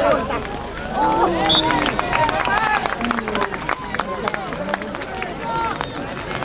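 Several voices shouting and calling out during a football match, over a scatter of short sharp taps.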